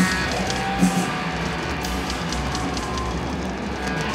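Live doom metal band playing: heavily distorted electric guitars and bass over drums, with a couple of drum and cymbal hits in the first second.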